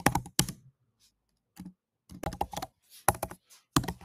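Computer keyboard being typed on: a few separate keystroke clicks, then small quick runs of them, with short pauses between.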